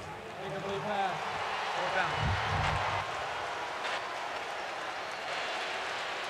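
A referee's voice over a stadium public-address system announcing the replay ruling on an incomplete pass, heard over steady crowd noise. The announcement ends about three seconds in, leaving only the crowd.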